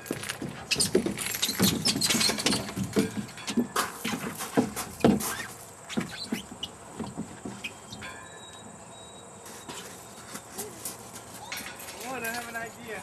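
Irregular knocks and clatter on a playground climbing structure, busiest in the first half and then fading to a quieter stretch with only a few light clicks.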